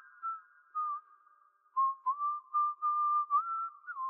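A person whistling a tune as background music. There are a few short gliding notes, a pause of about a second, then a longer run of notes.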